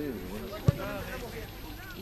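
Men's voices talking close by, in conversation, with one sharp thump, the loudest sound, a little under a second in.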